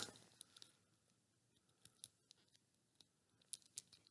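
Near silence, with a handful of faint, scattered clicks from handling a small plastic doll and screwdriver.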